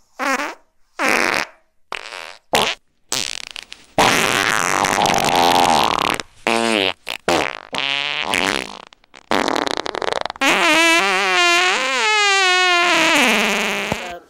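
A string of loud, distorted fart-like sound effects: several short blasts in the first few seconds, then longer buzzing ones whose pitch wavers up and down.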